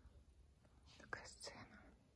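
Near silence, broken about halfway through by a brief whispered voice lasting about a second.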